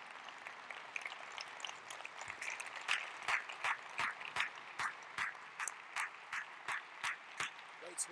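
Audience applauding in a large hall. From about three seconds in, one person's hand claps stand out close to the microphone, sharp and regular at about three a second.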